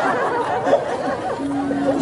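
Overlapping chatter of several voices, with one voice drawing out a held note near the end and faint music beneath.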